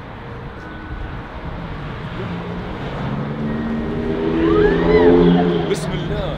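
Outdoor street noise with a motor vehicle passing, its engine hum swelling to a peak about five seconds in and then fading. Near the peak a faint high, wavering cry rises and falls, taken for a scream.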